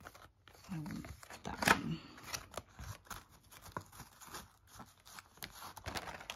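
Laminated cards and clear plastic binder pockets being handled and flicked through: a run of light clicks, taps and plastic rustles. There are two brief murmurs of voice, the louder about two seconds in.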